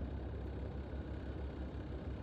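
Car cabin noise while driving: a steady low engine and road rumble heard from inside the car.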